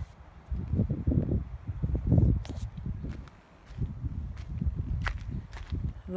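Footsteps walking over dry, rocky ground: irregular low thuds with a few sharp clicks of stones.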